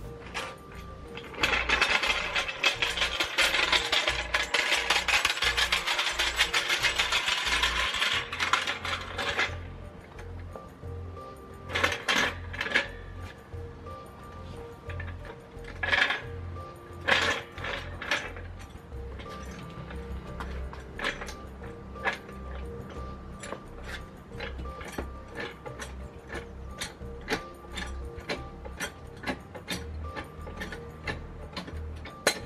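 Steel-wheeled hydraulic trolley jack rattling loudly as it is rolled over paving stones, from about two seconds in until about nine seconds in. Then come spaced clicks and a few louder clanks as its handle is pumped to lift a car. Background music plays throughout.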